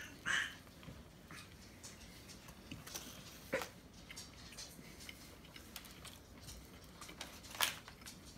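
A man biting into a soft sub sandwich roll and chewing quietly, with faint mouth sounds and a few short sharp clicks, about a third of a second in, about three and a half seconds in, and near the end.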